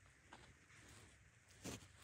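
Near silence: faint outdoor background, with a small click early on and a short, faint sound near the end.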